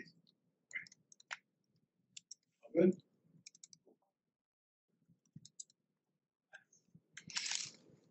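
A few scattered, light clicks from a laptop's keys and trackpad during an app switch, with a short hiss near the end.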